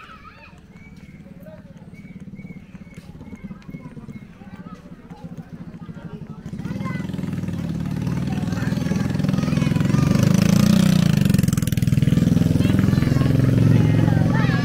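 A motorcycle approaching and passing close, its engine noise swelling from about halfway through and loudest near the end, over faint children's voices in the first half.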